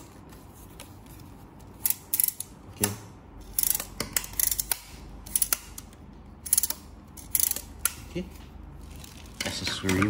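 Sharp plastic-and-metal clicks and clacks from a Philips PowerCyclone 5 FC9350 vacuum's hose handle and telescopic metal wand being fitted together and handled. The clicks start about two seconds in and come in clusters of one or two about every second until near the end.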